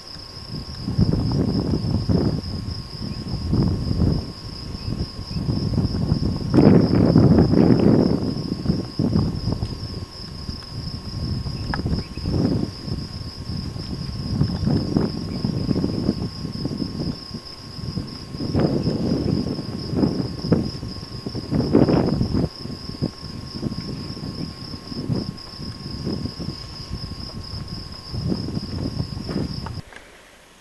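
A steady, high-pitched insect trill runs throughout. Over it comes irregular low rumbling noise on the microphone that swells and fades every second or two, loudest about seven seconds in.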